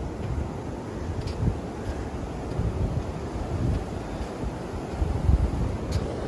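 Wind buffeting the microphone in gusts, with ocean surf washing behind it; the strongest gust comes about five seconds in.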